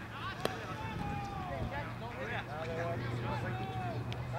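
Indistinct voices of players and onlookers talking and calling out across an open field, over a steady low hum, with one sharp click about half a second in.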